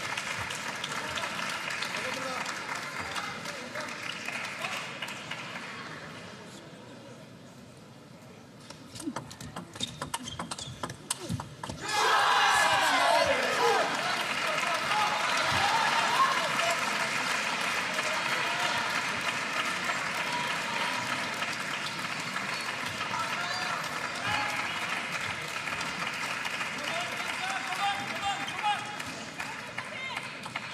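A table tennis rally: the celluloid ball clicks quickly off the bats and table for about three seconds while the arena crowd hushes. At about twelve seconds, as the point ends, the crowd erupts in loud cheering and shouting, then keeps up a steady noise.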